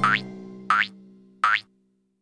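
Three short, rising cartoon boing sound effects, evenly spaced about two-thirds of a second apart, over a held music note that fades under them; the sound cuts off just after the third.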